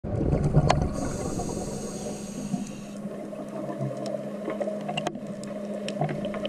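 Underwater sound of a scuba diver breathing through a regulator: a loud rumble of exhaled bubbles in the first second, then a hiss of drawn-in breath, then a quieter stretch with scattered faint clicks. A steady low hum runs underneath.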